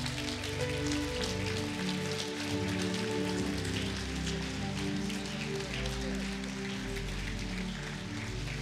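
A congregation applauding, a dense, steady patter of many hands clapping, over sustained chords of worship music.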